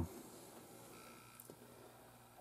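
A faint short electronic beep, a steady tone lasting about half a second, about a second in, followed by a light click; otherwise quiet room tone.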